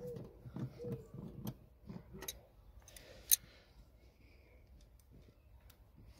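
A few scattered sharp clicks and taps of hand tools on the pedal-box nuts and bracket as the nuts are pinched up. The sharpest click comes a little after three seconds in.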